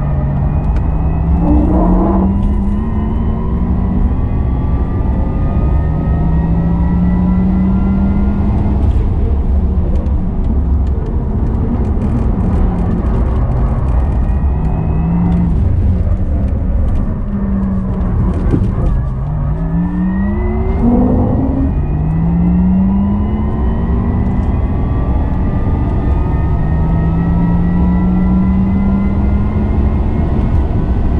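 Porsche Taycan Turbo S electric drive motors whining from inside the cabin at racing speed, over heavy road and wind rumble. Several tones glide up together as the car accelerates, fall sharply a little past halfway, then climb again.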